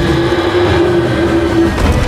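An elephant trumpeting: one long, steady call held for nearly two seconds over a deep rumble, then a thud near the end.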